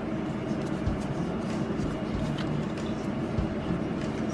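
A steady low background hum, with faint soft clicks and slides of trading cards being flipped through by hand a few times.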